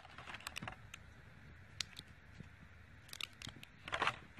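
Faint, scattered light clicks and rustles of hands handling a plastic packaging tray and the small plastic bag of spare ear tips in it, with a few quick clicks bunched together and a louder one near the end.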